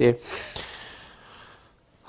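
A word ending, then a man's breath close to a lapel microphone, fading out over about a second and a half.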